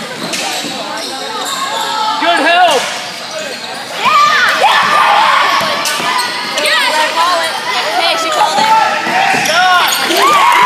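Live basketball play in a reverberant gym: a ball bouncing on the hardwood floor, short sneaker squeaks and spectators shouting. The crowd noise gets louder about four seconds in.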